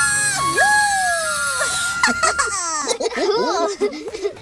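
A cartoonish dinosaur character's voice whooping in long sliding glides as he swings on a rope, then children laughing from about halfway, over light music.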